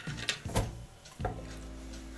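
A few light knocks and rattles as a wooden cuckoo clock case and its hanging chains are handled, in the first second or so, followed by a faint steady hum.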